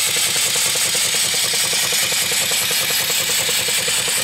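Homemade single-cylinder live steam engine (2.75-inch bore, 3-inch stroke) running steadily under steam, its exhaust chuffs and moving parts making a rapid, even beat over a continuous steam hiss. The engine is brand new on its first run, not yet broken in, which its builder expects to make it run rougher for now.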